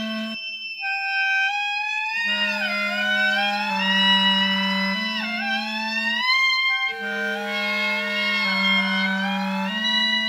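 Clarinets playing a multi-part canon: held low notes change in steps beneath a higher line that slides upward and swoops down in pitch. The low voice drops out briefly twice.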